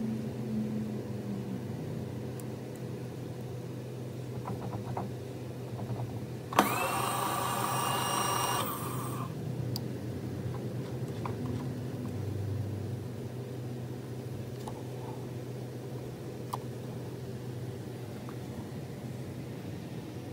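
Steady electric hum from a milling machine, with a higher motor whine about six and a half seconds in that starts with a click, rises in pitch and runs for about two seconds before stopping: the table being traversed by its power feed to the other end of the test bar.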